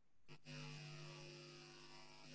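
Faint steady electrical hum on the microphone audio, a buzz of several even tones that comes in about half a second in.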